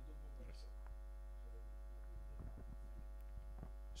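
Steady low electrical mains hum, with a few faint small knocks about halfway through and later.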